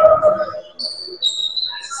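Basketball sneakers squeaking on a hardwood gym floor: thin high squeaks that come in about a second in, one held and stepping slightly lower toward the end.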